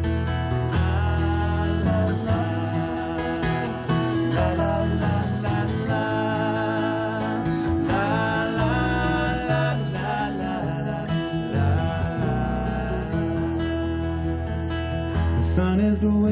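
Live folk band playing a song's instrumental passage: acoustic guitar strumming over an electric bass line, continuous and steady.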